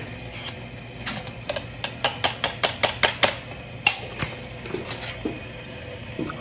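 A quick run of light taps, about a dozen over two seconds, then one more a little later, as ground coffee is knocked out into a paper filter in a Chemex brewer.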